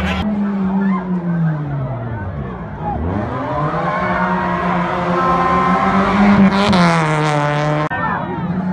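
Rally car engine running hard on a dirt stage: the engine note falls away over the first few seconds, climbs and holds high, then drops again near the end, with a burst of hiss about seven seconds in.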